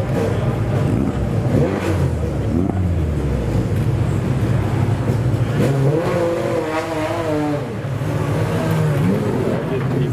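Pagani Zonda R's Mercedes-AMG V12 running at idle, with a brief rev that rises and falls in pitch between about six and eight seconds in.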